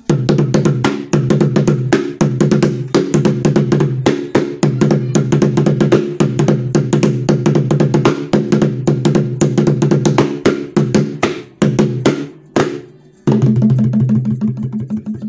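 Fast, irregular drumming, several strokes a second, over a steady low music bed. The drumming breaks off briefly a little before the end.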